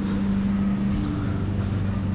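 A steady low mechanical hum from a motor or machine, with a low rumble beneath it.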